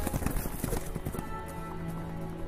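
Horse hooves clopping in a quick run that thins out after the first second, over background music.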